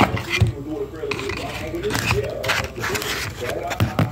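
A person's voice talking, with a few sharp clicks and scrapes of a plastic pistol holster being handled in a foam-lined case.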